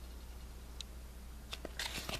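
Quiet handling of a plastic DVD case and its paper booklet over a steady low room hum, with a faint tick about a second in and a few small clicks near the end.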